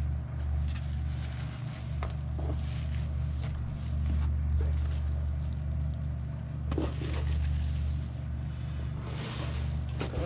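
A steady low hum throughout, with faint soft rustles and crackles from hands digging through moist worm-bin castings and soggy cardboard, clearest around two seconds in and near seven seconds.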